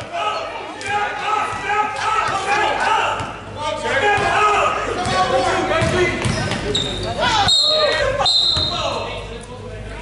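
A basketball being dribbled on a hardwood gym floor, its bounces echoing in the large hall, under spectators' voices and calls. A couple of short high-pitched squeaks come about seven and eight seconds in.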